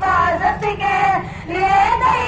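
A child's voice singing a song, the melody gliding and holding notes.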